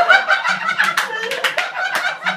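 A group of men laughing loudly together, one with a high-pitched laugh.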